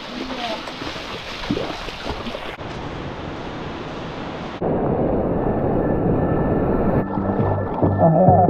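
Steady rush of surf and wind on the microphone, changing abruptly in level and tone a few times and louder from about halfway. Music comes in near the end.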